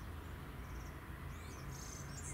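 Faint outdoor garden ambience: a low steady rumble with faint, high-pitched bird chirps, a short quick series within the first second and a few sweeping calls in the second half.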